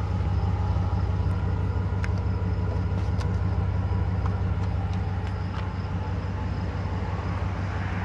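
Ram 1500 pickup's engine idling with a steady low rumble, with a few light clicks from the trailer wiring socket's plastic cover being handled.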